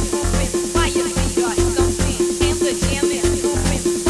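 Jumpstyle house club track: a steady kick drum at about two and a half beats a second under a repeating synth note and short rising stabs.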